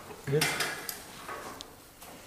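Brief light clatter of a small hand tool being handled, about half a second in, followed by a short faint tick.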